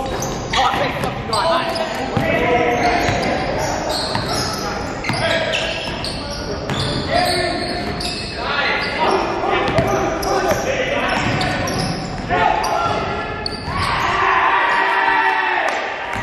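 Basketball game in a gymnasium: the ball bouncing on the hardwood floor under players' shouts and chatter, all echoing in the hall.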